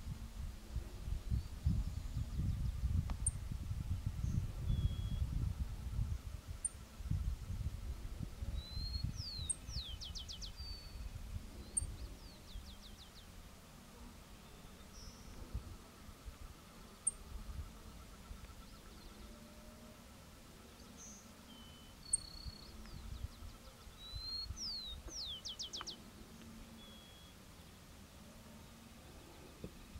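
Carbonated Sierra Finch singing two short phrases, one about nine seconds in and one near the end. Each is a brief rising note followed by a fast run of high descending sweeps, with scattered thin high ticks between. Wind rumbles on the microphone through the first several seconds.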